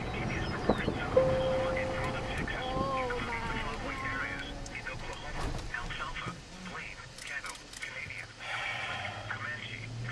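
Moving car's cabin: a steady low road and engine rumble, with faint, indistinct voices under it and a brief held tone about a second in.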